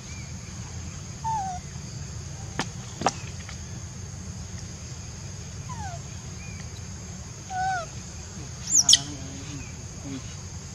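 Baby macaque calling: a few short, falling cries spread through, then a sharp pair of high squeals about nine seconds in, which is the loudest sound. Two sharp clicks come a little before the third second, over a steady outdoor hiss.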